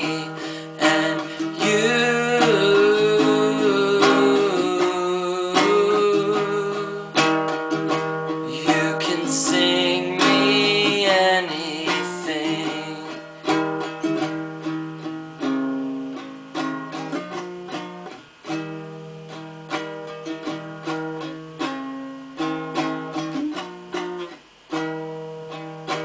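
Ukulele strummed in steady chords, with a man's singing voice over it for roughly the first half; in the second half the ukulele plays on alone.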